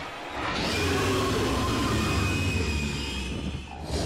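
Soundtrack of an animated show: a long low rumble with sustained higher tones, swelling in about half a second in and fading just before the end.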